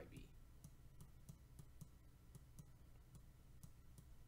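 Faint, irregular clicks, a few a second, of a stylus tip tapping a tablet while writing by hand.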